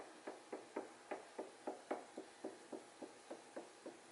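Faint, soft sticky taps of a paint-covered balloon being dabbed again and again onto wet acrylic paint on a canvas, about four taps a second in an even rhythm.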